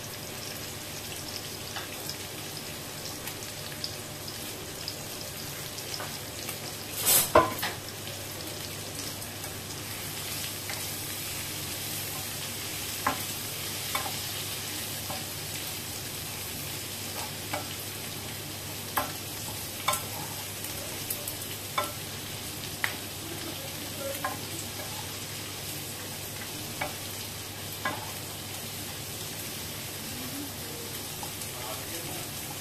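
Onion and tomato masala with boiled eggs frying in a granite-coated nonstick pan, a steady sizzle throughout. A flat spatula stirs it, scraping and knocking against the pan: a cluster of loud knocks about seven seconds in, then single taps every second or two through the rest.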